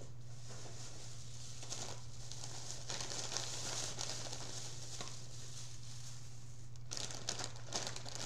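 Thin plastic grocery bag rustling and crinkling as it is handled. Near the end there are sharper crinkles as a bag of chips comes out of it. A steady low hum sits underneath.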